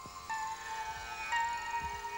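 Slow instrumental background music: long held notes, with a new note starting twice, about a second apart.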